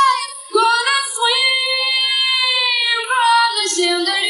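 Female pop vocal singing long held notes that glide slowly between pitches, with a short break about half a second in, in a slow chillout remix of a pop song.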